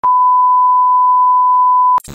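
A loud, steady 1 kHz test-tone beep, the kind that goes with TV colour bars, starting and stopping abruptly.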